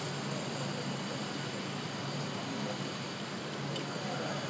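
Steady machine-shop background hum with a low, even drone.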